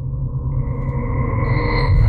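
Edited-in suspense sound effect: a steady low rumbling drone with a held tone above it, joined about halfway in by a higher tone and then by still higher ones near the end, each about an octave above the last.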